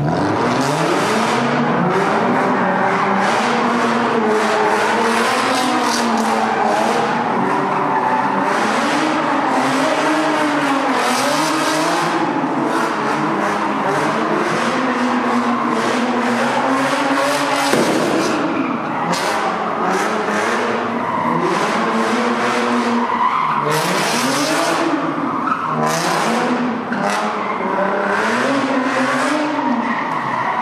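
A car doing donuts: the engine revs up and down in repeated waves as the rear tyres spin and squeal on the pavement.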